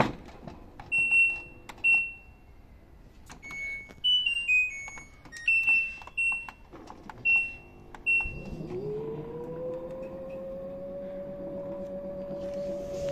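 Key-press beeps from an LG WD-10600SDS washing machine's control panel in service mode, with a short descending run of tones midway. About eight seconds in, the direct-drive motor starts turning the drum, its whine rising in pitch and then holding steady.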